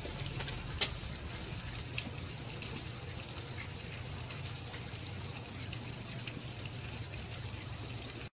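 Steady rain falling, with now and then a sharper drop tapping close by, the clearest just under a second in.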